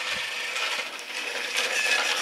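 Battery-powered TrackMaster Thomas toy engine running along plastic track, its small electric motor and gears giving a steady mechanical whirr.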